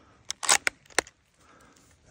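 Swedish Mauser M96 bolt-action rifle being loaded: 6.5 Swede cartridges pressed down into its magazine with a quick run of metallic clicks in the first second, ending in one sharp click.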